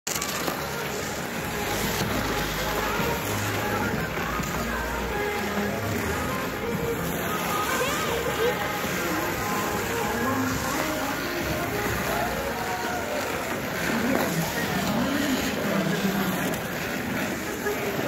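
Ice rink ambience: indistinct voices of skaters and background music over a steady hiss.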